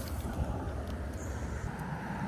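Steady low background rumble with no distinct event, the kind heard beside a road.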